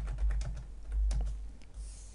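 Computer keyboard typing: a quick, uneven run of key clicks as code is entered.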